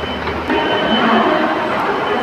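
Escalator running: a steady mechanical hum with a thin high whine, the sound shifting about half a second in.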